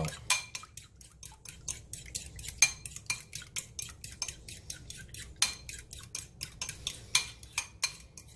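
A metal fork beating egg yolks and milk in a ceramic bowl: quick, uneven clinks of the fork against the bowl, several a second, with the liquid sloshing.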